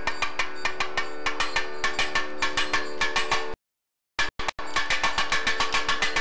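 A brass puja hand bell rung rapidly and evenly, about five strokes a second, over a steady drone that stops just past halfway. The sound drops out for about half a second, then the ringing carries on.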